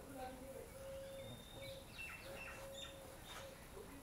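Faint bird chirps, several short high calls through the middle, over a quiet background.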